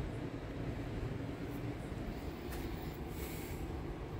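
Steady low background rumble of shop room noise, with a few faint clicks and a brief rustle near the end as a cast port mold is handled and set down on a steel bench.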